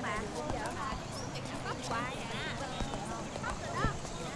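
Outdoor ambience of birds chirping in many short, quick calls, with indistinct voices of passers-by. A single sharp knock comes just before the end.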